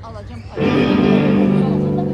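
Electric guitar chord struck about half a second in and left ringing loudly for about two seconds.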